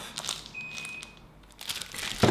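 A single short, high electronic beep, held steady for well under a second, about half a second in. Light clicks and crinkles from handling are around it.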